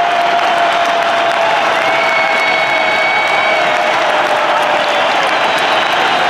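Large stadium crowd cheering and clapping, a dense steady noise throughout. Over it runs one long held tone that slowly sinks in pitch, with a shorter, higher tone joining it about two seconds in.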